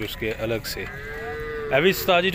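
Young water buffalo mooing: one long, steady call, then a second, louder call rising in pitch near the end.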